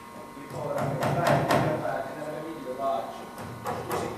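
Actors speaking their lines on a theatre stage. Several sharp clicks cut through: a cluster about a second in and two more near the end.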